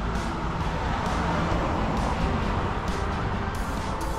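A car passing on the road: its tyre and engine noise swells and then fades over about two seconds. Steady background music plays underneath.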